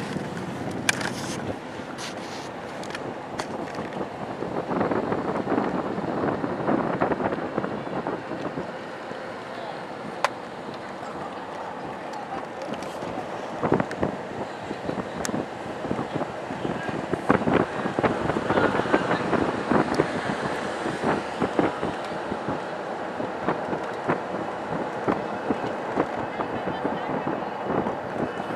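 Road and engine noise heard from inside a moving car, with scattered short knocks and rattles.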